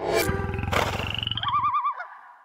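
Channel logo sting: a sudden whoosh, then a low pulsing growl like a roar, ending in a quickly wavering tone.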